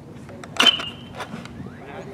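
A metal baseball bat striking a pitched ball: one loud ping about half a second in, ringing briefly after the hit, followed by a few fainter clicks.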